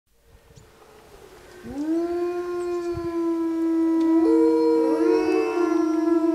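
Wolves howling: long, held howls overlapping one another, with another howl joining about four seconds in.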